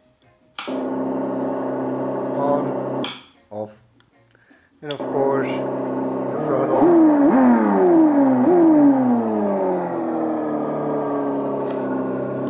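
Simulated engine sound from an ESS-One Plus RC engine sound unit played through a PC speaker system: a steady idle starts, cuts out about three seconds in and comes back about two seconds later, then revs up three times in quick succession, each rev rising sharply and falling back, before settling to idle again.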